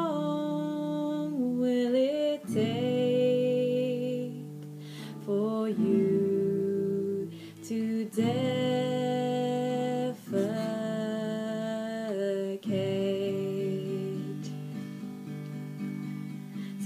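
Acoustic guitar being strummed while a woman's voice sings long held notes without clear words, the pitch sliding between them.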